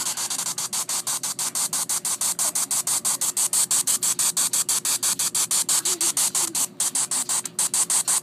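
Spirit Box Gold app on a tablet running its sweep through the tablet's speaker: hissing static chopped into rapid even pulses, about seven a second, with a few faint brief pitched snatches near the middle.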